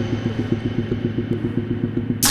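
Live electronic synthesizer music: a fast, even bass pulse of about eight notes a second over a sustained low drone, with the treble filtered away so it sounds dark and buzzy.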